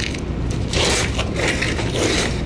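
Metal clicking and rattling from a wire live-animal trap being handled, in two short bursts about a second in and near the end.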